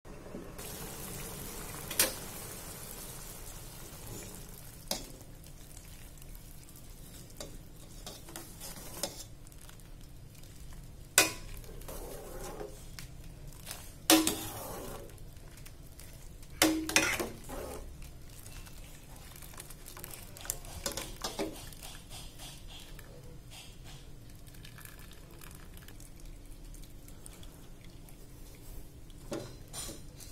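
A metal ladle and a wire-mesh strainer scooping boiled banana heart out of a large steel pot of cooking water, with scraping and sharp knocks of metal on the pot. Knocks come every few seconds, the loudest about 11, 14 and 17 seconds in, two of them ringing briefly.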